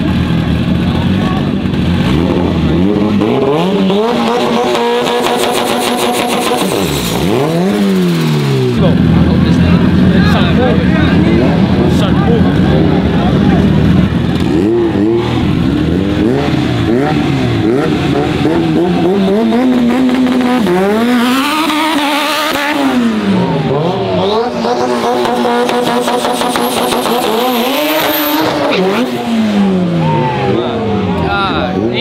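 Two modified all-wheel-drive turbo street cars revving hard. The engine pitch climbs and drops several times, and the cars pull away near the end.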